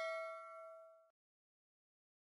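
A bell-chime sound effect, like a notification ding, rings out and fades, dying away about a second in.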